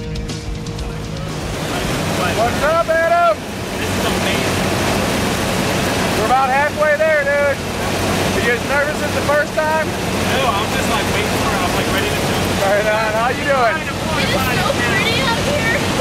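Steady loud cabin noise of a small jump plane's engine and airflow during the climb to altitude, with raised voices calling out over it in several short bursts.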